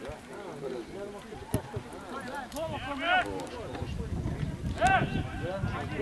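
Footballers shouting short calls to each other across an open grass pitch, a few seconds apart, with a single sharp thud about one and a half seconds in.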